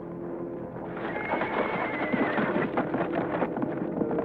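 A horse whinnies about a second in, then its hoofbeats follow as it moves off under a rider, over a soft music score.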